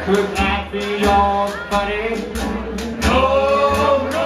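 A jug band playing live: male voices singing over strummed guitar and a washboard beat, with a low bass line underneath.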